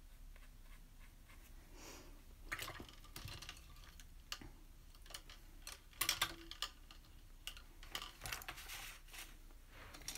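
Faint, scattered clicks, taps and rustles of paintbrushes and paint supplies being handled on a desk, with a cluster of sharper clinks about six seconds in.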